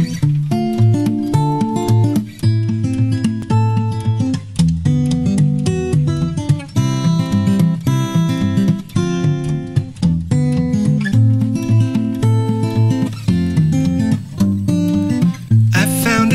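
Acoustic guitar playing a steady strummed chord pattern, the instrumental introduction of a song before the vocals come in.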